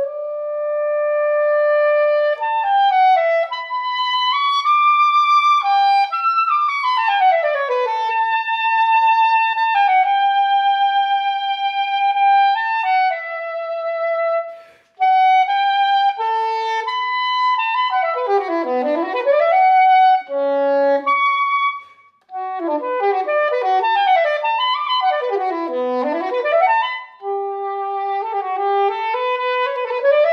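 Solo soprano saxophone playing a classical piece: long held notes and slow melodic lines, then fast runs that sweep down and back up, with two short breaks for breath between phrases.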